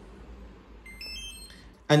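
GOOLOO GT150 cordless tire inflator giving a short electronic power-on beep of several high tones, about a second in, as its power button is held and the unit switches on.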